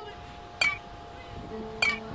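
Music with a bright metallic chiming strike about every 1.2 seconds over held notes.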